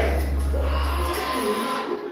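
Party sound-system music: a deep, sustained bass note that fades out after about a second and a half, with voices over it.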